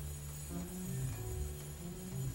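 Upright double bass played pizzicato: a run of low plucked notes, changing several times a second.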